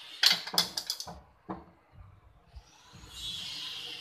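Quick run of sharp clicks, about six in under a second, then a single click, as the side pillar of a wooden home temple is fastened to its base. A steady hiss rises in during the second half.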